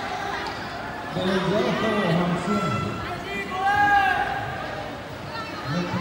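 Indistinct voices talking in a large hall, with a louder voice rising and falling about four seconds in.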